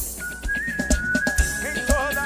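Live band music in an instrumental passage: a steady beat about twice a second under one long high held note that steps up slightly in pitch.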